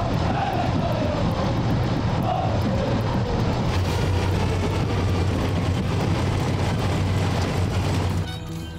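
Heavy engines running steadily: a dense rushing noise over a low hum.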